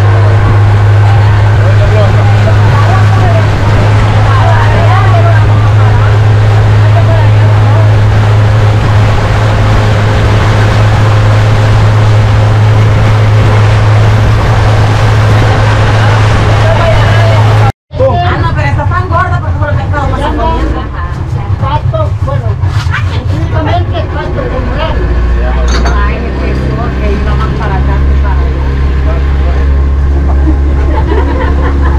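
Small passenger boat's motor running steadily at speed, loud, with water rushing along the hull and voices talking over it. There is a sudden cut about two-thirds of the way through, after which the motor runs at a lower note.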